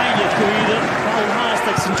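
A match commentator talking over steady crowd noise from a football stadium.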